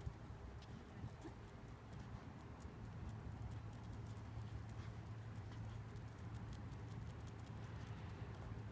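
Faint, irregular clicking of a small dog's claws on concrete as it walks and searches, over a steady low hum.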